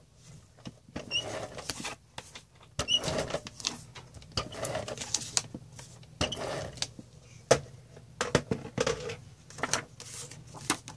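Sheets of cardstock and paper being shuffled and laid down on a desk, with an adhesive tape runner rolled across the paper: irregular rustles and sharp little clicks throughout.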